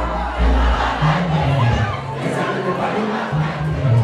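Crowd shouting and cheering over loud dancehall music. The heavy bass drops out from about halfway through, leaving mostly the crowd's shouts, and comes back right at the end.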